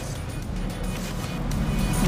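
Broadcast transition music sting with a whooshing swell that grows louder toward the end.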